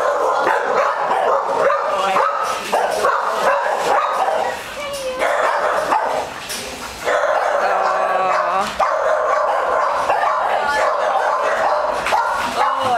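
Dogs barking and yipping in a kennel block, almost without pause, with brief lulls around four and a half and six to seven seconds in.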